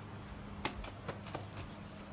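A few short, faint knocks and clicks in quick succession around the middle, over a steady low hum.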